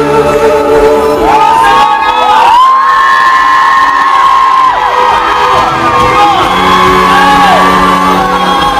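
A live pop-rock band and a group of singers performing together, with one voice holding a long note in the middle. The audience around them is cheering and whooping along.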